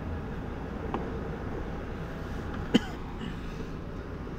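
Steady low background hum, with a brief throat sound from a man, like a short cough, about three seconds in.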